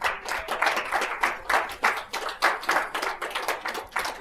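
Audience applauding: many hands clapping in a dense, irregular patter that starts suddenly and thins out near the end.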